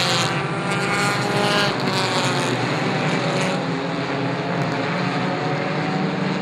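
A pack of four-cylinder Pure 4 stock race cars running at racing speed, several engines sounding together in a steady drone whose pitches slide slightly as the cars go through the turn.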